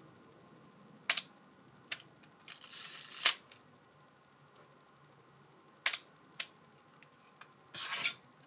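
Hasselblad 903SWC medium-format camera being operated by hand: a series of sharp mechanical clicks, the loudest coming about three seconds in at the end of a short rasping sound, with a lighter run of clicks in the second half and another brief rasp near the end. The clicks fit the camera's leaf shutter being fired and wound.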